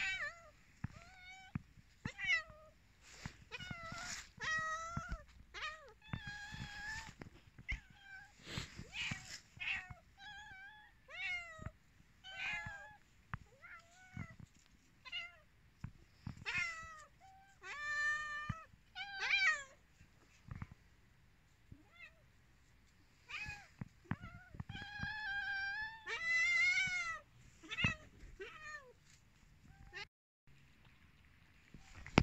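Hungry cats meowing over and over, short calls coming about every second, with a brief lull about two-thirds through: food-begging meows from cats waiting to be fed.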